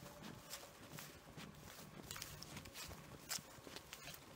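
Faint footsteps of a person walking on grass and dry leaves, about two steps a second, with one louder step near the end.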